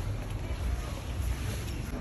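Wind buffeting the microphone of a handheld phone: an uneven low rumble.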